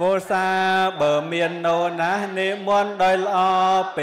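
A Buddhist monk's voice chanting into a microphone: long held notes in a single male voice that slides between pitches, with a brief break about a second in.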